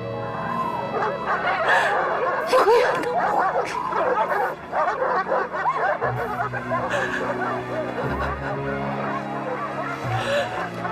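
Several dogs barking and yelping in a dense, overlapping chorus over background music with held notes.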